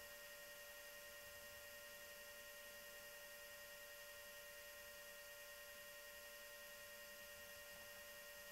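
Near silence: a faint, steady electronic hum with a few thin constant tones over a light hiss.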